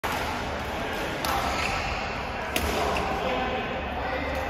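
Sharp racket-on-shuttlecock clicks, one about a second in and another past two and a half seconds, over a steady murmur of voices and court noise in a large, echoing sports hall.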